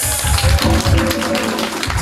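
Live band playing a short burst of music: a steady pulsing low beat under a held chord, with a bright high wash over it.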